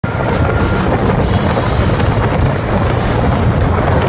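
High-speed tour boat under way on open water: a loud, steady engine rumble mixed with wind buffeting, heard from the open passenger deck.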